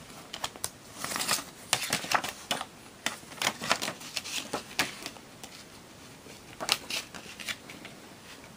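Plastic CD jewel case and its paper booklet being handled: a quick string of clicks, taps and light rustling through the first few seconds, then a few more clicks near the end.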